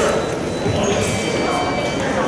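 Voices murmuring and echoing in a large sports hall, with light footsteps of fencers on the piste.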